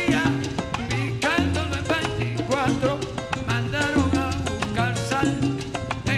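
Salsa music in son montuno style: a band playing with a bass line that repeats in a steady rhythm, percussion, and melodic lines above.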